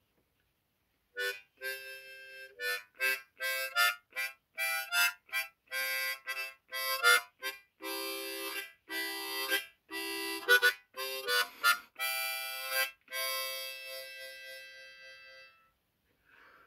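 Diatonic harmonica played by mouth: an improvised tune of short notes and longer held chords. It starts about a second in and trails off near the end.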